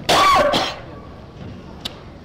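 A man gives a single short cough, then faint background hiss with one small click near the end.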